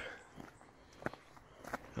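A few soft footsteps on a dirt forest path strewn with dry leaves, spaced well apart.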